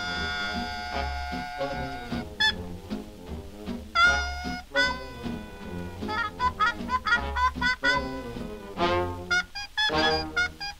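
Swing music with brass: a long held horn chord for the first two seconds, then short, accented brass hits over a steady beat.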